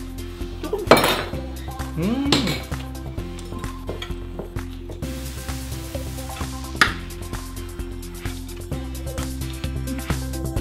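Background music with a steady beat over the clink and clatter of metal chopsticks and utensils against dishes and pots. Two sharp clinks stand out, about a second in and near seven seconds.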